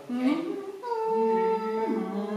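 Choir voices humming their held starting notes: a higher note comes in just under a second in and a lower one joins it shortly after, following a few quick sung or spoken syllables at the start.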